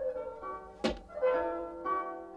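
Instrumental background music with held and plucked string notes, and a single sharp thump just under a second in.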